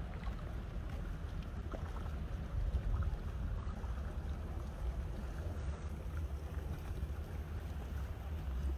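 Wind buffeting a phone's microphone: a steady low rumble, swelling slightly about three seconds in.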